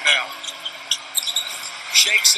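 Basketball game broadcast sound between comments: steady arena crowd noise, with short high squeaks from the court scattered through it.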